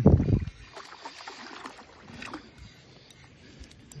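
A gust of wind on the microphone at the start, then faint water splashing and a few small clicks as a hooked bass is reeled in on light line.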